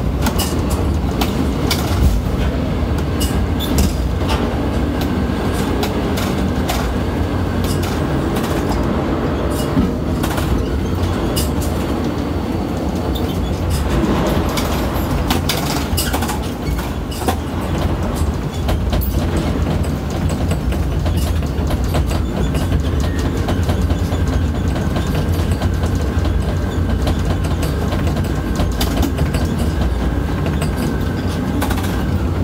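Container crane's hoist machinery heard from inside the operator's cab: a loud, steady low rumble with constant rattling and clicking and a faint high whine, as the spreader is run down into the ship's hold and back up.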